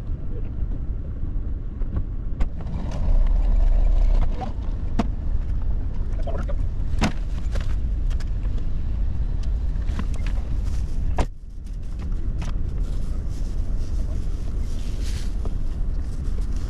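Grocery bags being loaded into a car's back seat: scattered knocks, clicks and rustles over a steady low rumble, with a sharper knock about two-thirds of the way through.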